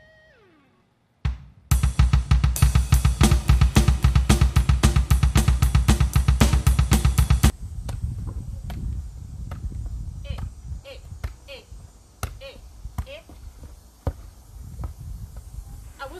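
Electronic drum kit played fast: a steady run of even strokes, about five a second, over a bass drum, starting about a second in and cutting off suddenly after about six seconds. Quieter scattered knocks follow.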